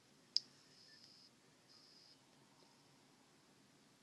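A single sharp click about a third of a second in, followed by a faint high hiss that comes and goes; otherwise near silence.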